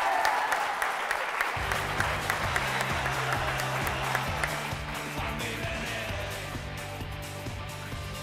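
Studio audience applauding after a correct quiz answer, the clapping slowly fading. About a second and a half in, background music with a steady, rhythmic bass line comes in beneath it.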